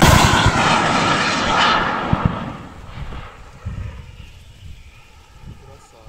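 Starstreak missile's rocket motor rushing away just after a shoulder launch, loud for about two seconds and then fading into the distance.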